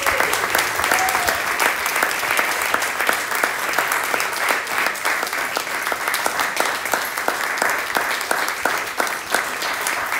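Audience applauding steadily after a jazz band's number, dense hand-clapping with a short vocal whoop about a second in.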